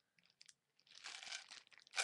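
Faint crinkling rustle of small craft supplies being handled close to the microphone, a short stretch in the middle ending in a sharp click.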